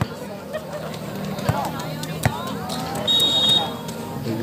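Spectators chattering around an outdoor volleyball court, with two sharp knocks partway through, then a short, steady referee's whistle blast about three seconds in, the signal for the serve.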